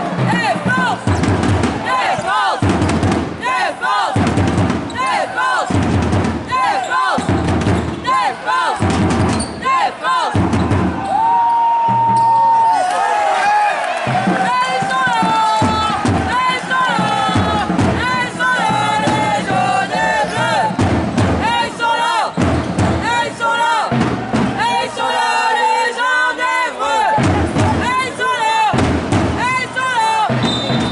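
Basketball arena crowd noise with music and many voices singing or chanting, over a low beat that thuds about once a second. A single held tone sounds briefly about eleven seconds in.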